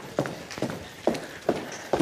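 Footsteps on a hard concrete floor: about five even steps at a walking pace.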